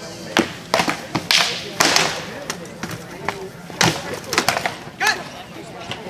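Armoured fighters trading blows in a heavy-combat bout: an irregular run of sharp cracks and thuds as rattan weapons strike shields and armour, with a cluster in the first two seconds and more around the fourth and fifth seconds.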